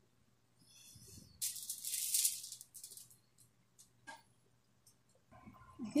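Kitchen handling noise: a brief rattling rustle lasting about a second, then a few light clicks and knocks.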